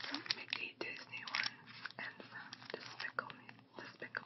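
Fingers pressing and handling a clear plastic bag of puffy stickers, making crinkling plastic with many short, sharp crackles, under a whispering voice.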